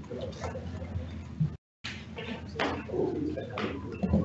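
Chamber room tone: a steady low electrical hum under soft murmured voices and a few small knocks and clicks, cut by a brief dropout of the audio about one and a half seconds in.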